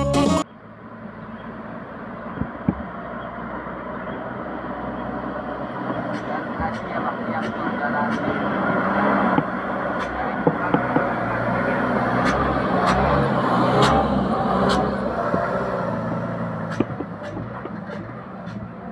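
A loaded light diesel truck's engine running under load as it approaches, passes close by and pulls away. The sound grows steadily louder to a peak about three-quarters of the way through, then fades, with scattered sharp clicks over it.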